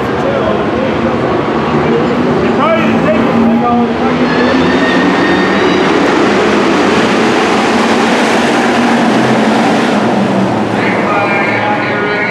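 A pack of hobby stock race cars running their V8 engines at speed around a dirt oval. The engine noise is loud and steady throughout and builds about a third of the way in as the pack comes nearer.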